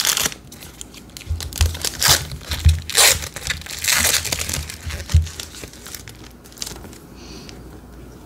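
Foil trading-card pack wrapper crinkling and tearing as it is opened by hand, in several quick rustling bursts with a few soft thumps. It quiets to light handling in the last couple of seconds.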